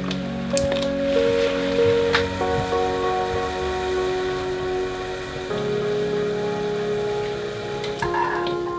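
Background music with long held notes over the steady bubbling of a pot of boiling water, with a few light clicks and splashes in the first two seconds as potato gnocchi slide in off a plastic scraper.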